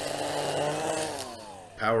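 Milwaukee M18 brushless battery string trimmer's electric motor whirring with its line spinning, then winding down in a falling whine over the second half as the trigger is let off.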